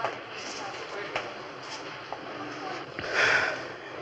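A man drinking from a cold bottle of Coke, with a few small clicks, then a loud breathy exhale of relief about three seconds in.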